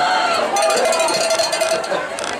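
Cowbell rung rapidly by football spectators, clanking over a crowd's yelling and a long held shout.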